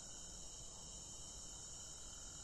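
Crickets chirring in the night, a faint, steady high-pitched drone that does not break.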